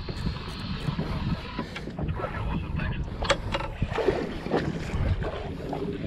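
Wind on the microphone and water noise on an open boat at sea, with the whir and a few sharp clicks of a baitcasting reel being cranked to bring in a hooked fish.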